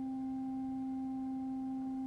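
Organ holding a single sustained note, an almost pure steady tone with a faint higher overtone, between moving passages of the piece.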